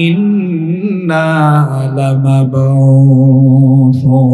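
A male preacher's voice chanting a sermon line in a slow, drawn-out melody. The pitch wavers through the first second, then holds one long note.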